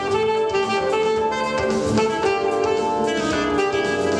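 Alto saxophone playing a jazz melody over a backing accompaniment with a steady beat.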